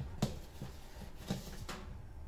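Metal baking tray being slid onto an oven's shelf runners, giving a few light metallic knocks and scrapes.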